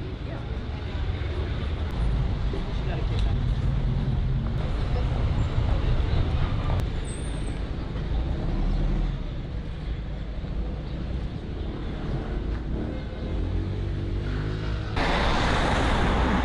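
City street ambience: a steady rumble of road traffic with faint voices of passers-by. Near the end it jumps abruptly to a louder, hissier traffic noise.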